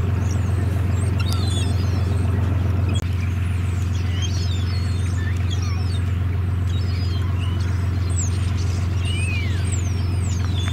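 Gulls calling repeatedly, short high cries that mostly fall in pitch, over a steady low rumble, with a brief drop-out about three seconds in.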